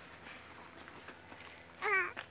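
A baby making one short, high-pitched, wavering coo near the end.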